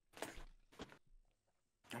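Faint handling of a plastic water bottle while drinking: a short rustle about a quarter second in and a single click near the one-second mark, otherwise near silence.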